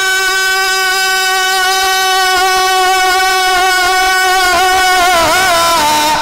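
A man's amplified singing voice holds one long, steady high note of a manqabat into the microphone, then breaks into a wavering ornament about five seconds in.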